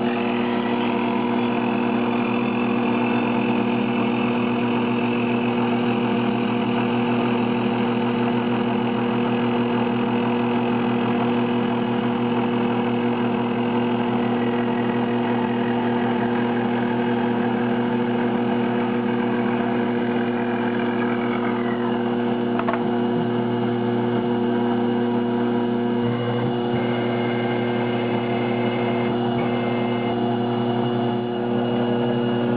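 TAIG benchtop CNC mill spindle driving a slitting saw through a block of Delrin (acetal plastic): a steady mechanical hum with a higher whine over it. About 20 seconds in one of the high tones falls in pitch, and a single brief tick follows shortly after.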